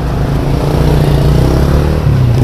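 A road vehicle's engine running steadily close by, a low hum that grows gradually louder.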